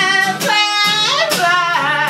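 A man singing long held notes that waver and slide in pitch, over a steadily strummed acoustic guitar.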